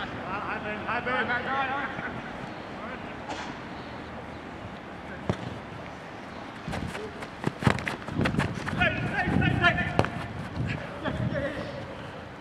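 Players' shouts and calls across an outdoor football pitch, too far off to make out, first near the start and again near the end. In between comes a cluster of sharp knocks, the loudest about seven to eight seconds in.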